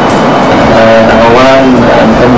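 Loud steady noise, with a person's voice coming in about a second in.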